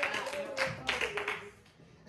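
Soft music with held notes under a few scattered taps, fading almost to silence near the end.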